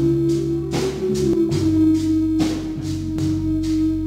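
A small live church band playing an instrumental passage: long held keyboard chords over an electric bass line, with a drum kit keeping a steady beat.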